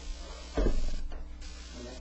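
A single short thump about half a second in, over a steady low hum.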